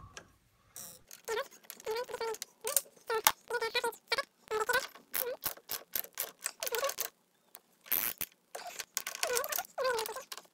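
Ratchet wrench clicking in short repeated strokes as a socket loosens the fasteners on top of a front air suspension strut, pausing briefly twice in the second half.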